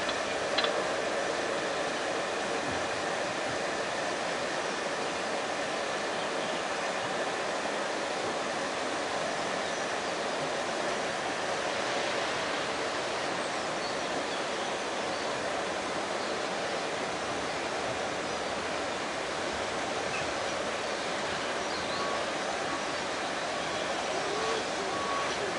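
Steady rushing hiss of steam escaping from an LMS Fowler 4F 0-6-0 steam locomotive, No. 43924, as it eases slowly away, blended with the rush of a fast stream beside the line. No exhaust beats stand out.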